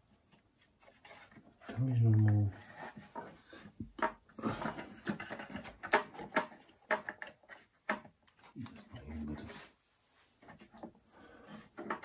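Clicks, knocks and scraping of hands working at parts inside an opened iMac to free the stuck logic board, with a knit sleeve brushing close to the microphone. Two short wordless grunts of effort, about two seconds in and about nine seconds in.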